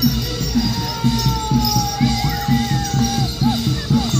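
Barongan procession music: a Javanese percussion ensemble playing a steady quick beat, about two to three strokes a second, under a long held high melodic note that sags slightly in pitch and then breaks into short curling turns near the end.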